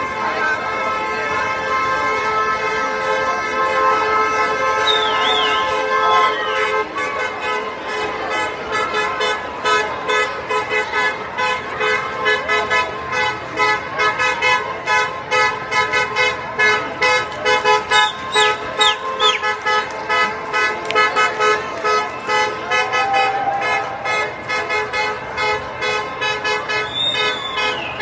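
Several vehicle horns honking at once in long held blasts, and from about seven seconds in a fast pulsing beat of a few toots a second carries on under them.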